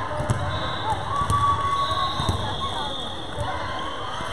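Echoing gymnasium chatter of players and spectators, with a volleyball bouncing on the hardwood floor several times and short squeaks.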